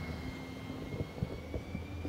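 Steady low background rumble with a thin, high-pitched whine held throughout and a few faint soft clicks.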